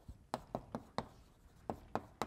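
Chalk writing on a blackboard: a quick series of sharp taps and short scrapes as the letters are stroked out, with a brief pause about halfway through.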